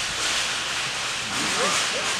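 A steady hiss of room noise, with faint voices in the background about one and a half seconds in.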